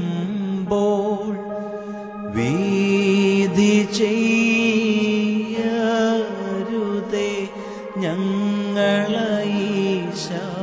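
A man singing a Malayalam Christian devotional song in long held notes over keyboard accompaniment, with a fresh phrase sliding in about two seconds in.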